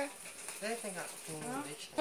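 Faint, quiet speech: brief snatches of a voice talking softly, much quieter than the talk around it.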